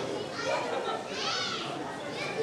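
Football spectators chattering, with children's voices among them; a child calls out in a high voice about a second in.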